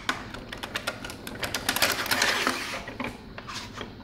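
Table saw miter gauge being slid along its slot in the saw's table top: a fast run of small clicks and rattles, busiest around the middle.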